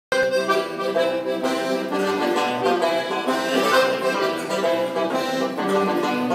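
Accordion playing a lively instrumental introduction: sustained chords and melody notes over a regular bass pulse. The sound starts abruptly as the recording begins.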